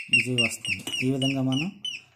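Electronic calling bell's speaker giving a rapid run of short, falling chirps that slow down and fade as its power wires are let go, with the bell circuit working again.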